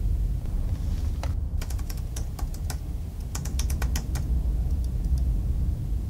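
Keys clicking on a computer keyboard in a quick, irregular run of typing, over a steady low hum.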